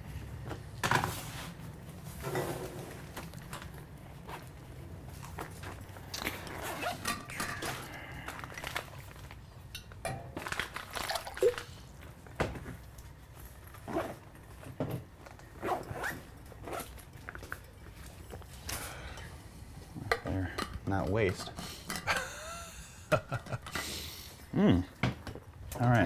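Scattered clinks and knocks of glass beer bottles and other items being handled and set down on a table.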